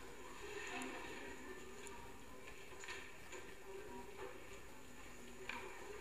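Faint background hum of a chamber heard through a television's speaker, with a few soft clicks scattered through it.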